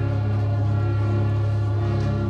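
Musical theatre score played live: a low note held steady under a sustained chord, with a choir-like texture.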